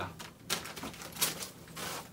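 Plastic packet wrapper crinkling in irregular crackles as a packet of sanitary pads is handled and tucked into a suitcase.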